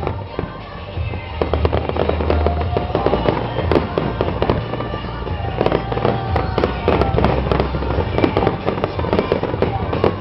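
Aerial fireworks shells bursting in a rapid, irregular run of sharp bangs and crackles, growing thicker about a second and a half in.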